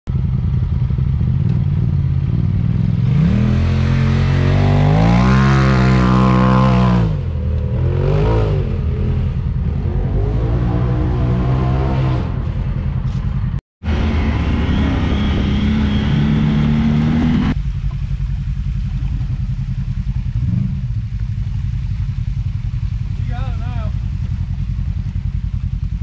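Side-by-side UTV engines running loud: for several seconds one revs up and down in pitch under load, then, after a brief dropout, an engine holds a steady note before settling into a lower, steady rumble.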